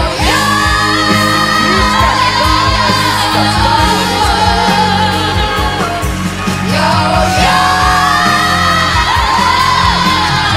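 Girl's solo voice singing a pop ballad in Serbian over a backing track. She holds long notes with vibrato near the start and slides up into another long held note about seven seconds in.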